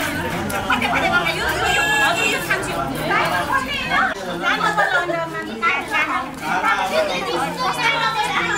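Several voices talking over one another at once: lively overlapping chatter.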